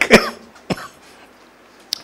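A man's short cough into a microphone at the very start, then a single faint click a little under a second in, followed by a quiet pause of room tone.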